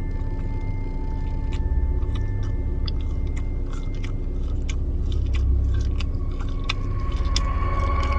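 A person chewing a mouthful of plain burger bun and pickle close to the microphone, with many small wet mouth clicks, over a low steady rumble.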